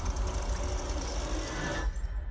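Horror trailer soundtrack: a dark, dense score with a heavy low rumble and a grinding, clicking mechanical texture, thinning out near the end.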